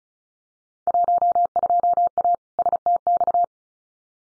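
Computer-generated Morse code at 35 words per minute: a single steady tone of about 700 Hz keyed on and off in fast dots and dashes for about two and a half seconds, starting about a second in. It repeats the Field Day contest exchange just spoken, 12A South Texas (sent as 12A STX).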